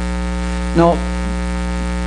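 Steady electrical mains hum with a buzzy stack of overtones, constant and fairly loud, under a single spoken word.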